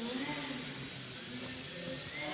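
Small electric motor and propeller of a micro indoor RC foam plane whining, its pitch rising and falling as it climbs.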